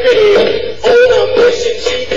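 Music: a song with a man's voice singing held, wavering notes without clear words over the backing track.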